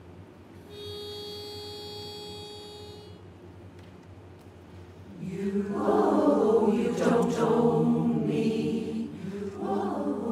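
A pitch pipe sounds one steady note for about two and a half seconds, giving the starting pitch. About five seconds in, a women's barbershop chorus begins singing a cappella in close harmony, loud and full.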